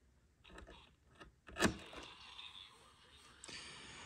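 Small clicks and scrapes of alligator-clip leads being handled on the spring terminals of a vintage electronic project kit, the loudest click a little past one and a half seconds in.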